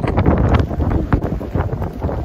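Wind buffeting the phone's microphone in loud, uneven gusts, with scattered crackles over the rumble.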